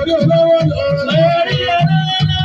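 Live fuji music: a man singing long, wavering melismatic lines into a microphone over a band with a steady pulsing bass beat.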